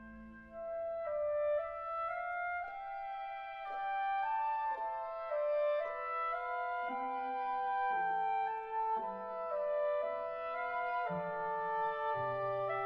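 A clarinet plays a smooth melody of held notes that move step by step. Lower instruments sustain notes beneath it, coming in and out during the second half.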